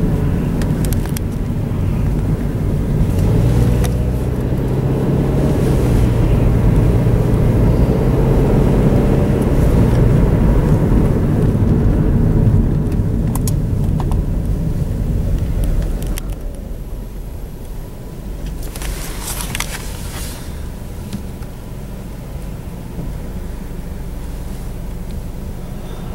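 Car cabin noise while driving: the engine and tyres run with a steady low rumble, the engine note climbing and getting louder through the first half. About two-thirds of the way in it drops quieter as the car slows, with a brief burst of clicking a few seconds later.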